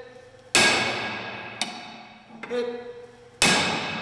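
Two hard metal-on-metal strikes about three seconds apart, a flathead axe driving a Halligan bar's fork end into a steel door; each blow rings and dies away over about a second. The fork is being driven in to knock a stubborn carriage bolt off the back of the door.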